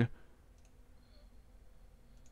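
Faint clicks of a computer mouse, mostly about half a second in, over low room tone.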